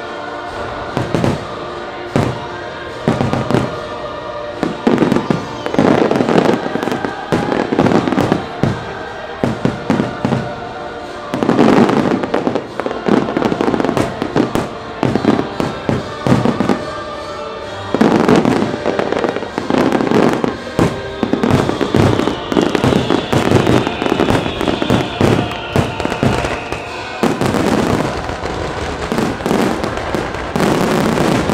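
Fireworks display: shells bursting in rapid, repeated bangs over a music soundtrack.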